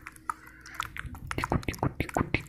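Close-up ASMR mouth sounds: a quick, irregular string of small wet clicks and pops, sparse at first and coming thicker from about a second in.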